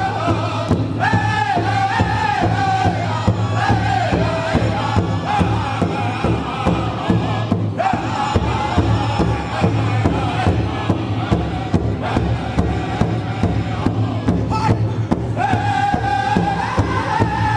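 Pow-wow drum group: several voices singing a chant over a steady drumbeat.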